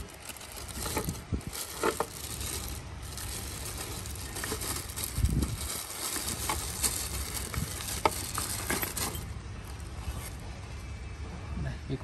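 Plastic wrapping crinkling and rustling as tools are handled and pulled out of a fabric tool bag, with scattered small clicks and knocks.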